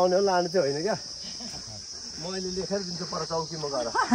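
A steady, high-pitched chorus of insects shrilling, with a person's voice holding long drawn-out notes over it in the first second and again from about two seconds in.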